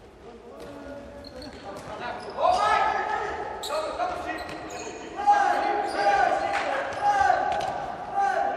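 Futsal ball being kicked and bouncing on a hard indoor court, with short knocks throughout, and players' shouts echoing in a large sports hall; the shouting gets loud from about two and a half seconds in.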